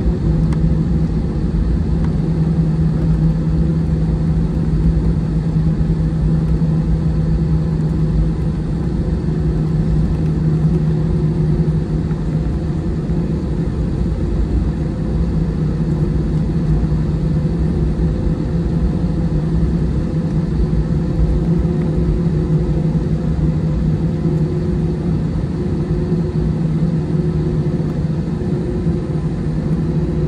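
Airbus A320 turbofan engines at low taxi thrust heard from inside the cabin: a steady, even hum with a low rumble beneath it as the airliner taxis.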